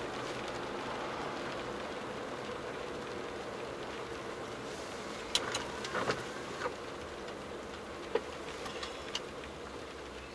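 Car driving on a wet road, heard from inside the cabin: a steady hiss of tyres and road noise that slowly fades. Through the middle comes a handful of short clicks and squeaks as the windscreen wiper sweeps the glass.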